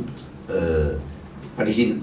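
A man's short, low hesitation sound, a drawn-out "uhh", about half a second in, then his speech resumes near the end.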